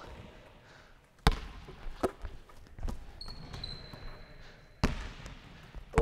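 Basketball bouncing on a wooden gym court, four separate irregular bounces, the third weaker than the rest. A faint thin high squeal runs between the last two bounces.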